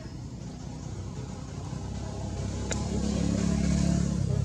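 An engine running off-picture, growing steadily louder toward the end, with one sharp click a little past halfway.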